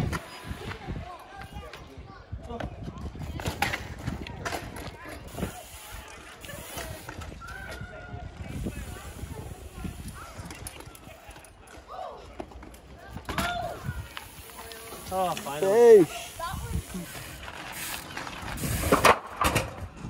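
Trials bike hopping and landing on a wall: scattered short knocks of tyres and frame on the wall and the ground. A voice calls out loudly about fifteen seconds in.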